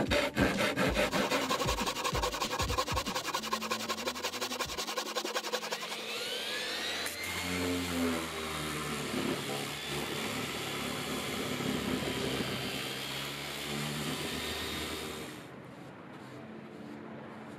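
A handsaw cuts a pine board with rapid back-and-forth strokes for about the first five seconds. An electric orbital sander then starts with a rising whine and runs steadily on the bare pine, cutting off shortly before the end.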